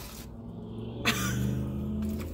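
A woman's long, held vocal sound at a steady pitch, growing louder about a second in.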